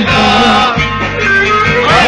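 Live Turkish folk music: two bağlamas, long-necked lutes, playing a plucked melody together.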